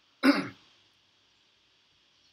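A person clears their throat once, a short sound falling in pitch about a quarter second in.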